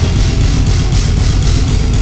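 Deathcore band playing live at high volume: dense distorted guitars over fast bass-drum hits, with the low end heaviest.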